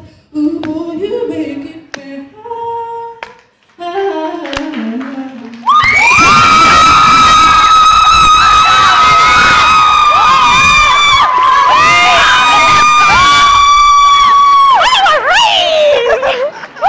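A woman singing the song's last phrases softly, then about six seconds in the audience bursts into loud, high-pitched screaming and cheering right by the microphone. Several voices hold shrill cries that break off and start again until the end.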